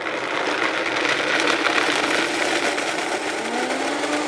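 A high-speed countertop blender runs, grinding almonds and water into a thick paste. The motor and grinding noise is loud and steady, and the motor's pitch rises slightly near the end.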